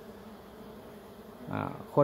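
Faint, steady buzzing hum of a colony of dwarf honeybees (Apis florea) crowded on an exposed comb.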